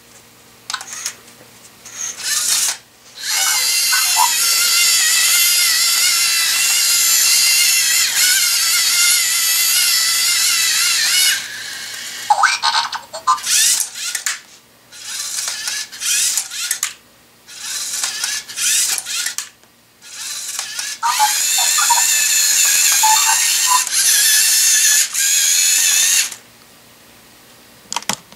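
LEGO Mindstorms EV3 SPIK3R robot's servo motors whining through their plastic gears in two long stretches as the robot crawls on its legs. In between come bursts of clicking and clattering from the leg and claw mechanisms.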